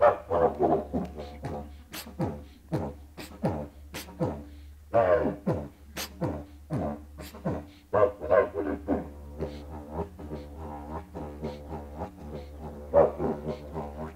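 Didgeridoo played with a steady low drone under a hip-hop beat of sharp, beatbox-like accents voiced through the instrument, about two a second. The accents thin out near the end, leaving a wavering drone.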